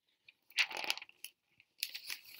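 Paperback picture book's pages rustling and crackling as a page is turned by hand: a short rustle about half a second in, then more crackles near the end.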